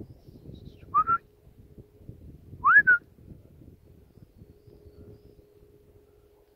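A person whistles twice: two short rising whistles, about a second in and again near the three-second mark, each sliding up in pitch and then levelling off. Faint rustling runs underneath.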